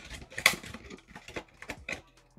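Plastic shrink wrap on a cardboard trading-card blaster box crinkling and clicking as the box is gripped and turned in the hand: a string of irregular sharp crackles, the loudest about half a second in.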